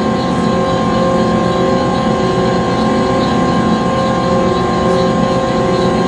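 Conveyor-belt machinery running steadily: an even mechanical rumble with a steady hum of several held tones over it.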